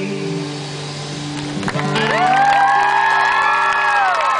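The band's final chord, on acoustic guitar and electric bass, rings out at the end of a live song. About two seconds in, the audience breaks into high whoops and cheering.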